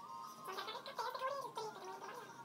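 A high singing voice with a wavering, warbling pitch.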